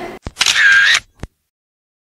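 Camera shutter: a click, a short hissy burst with a faint tone, and a second click about a second later, after which the sound cuts out completely.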